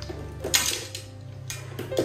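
Several sharp clinks of hard fishing gear knocking together as it is set down among other tackle, the loudest about half a second in, over steady background music.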